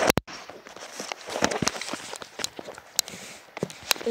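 A phone being handled, with two sharp knocks as a hand grabs it at the start, followed by scattered small clicks and soft rustling.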